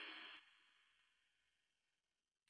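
Near silence: a faint hiss fades out within the first half second, then complete silence.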